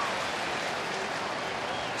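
Steady crowd noise from a baseball stadium crowd, an even wash of many voices.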